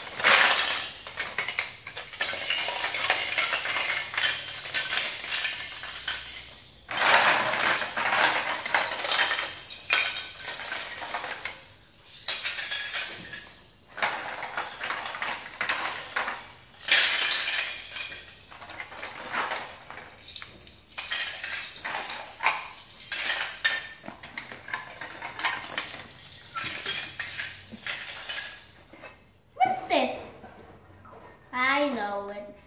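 Small plastic toy blocks clattering and rattling against each other as a hand rummages through them and lifts them out of a plastic bag, in dense runs with short pauses.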